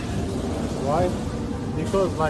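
Steady low background din of a busy shopping centre, with a short voice about a second in and again near the end.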